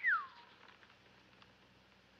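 A single short whistle that rises then falls in pitch, a reaction to the news just read from the paper, followed by faint steady film-soundtrack hiss.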